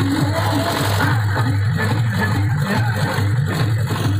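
Loud music playing through a large DJ sound system of stacked power amplifiers, steady and bass-heavy, with a diesel generator engine running underneath.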